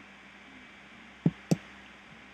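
Two short, sharp clicks about a quarter second apart near the middle, typical of a computer mouse button, over a faint steady electrical hum.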